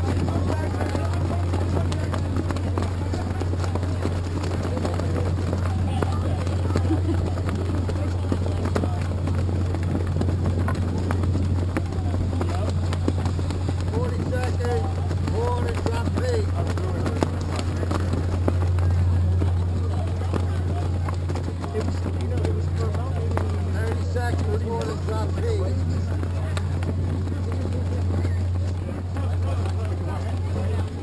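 Indistinct voices of people talking in the background, over a steady low hum that runs without a break.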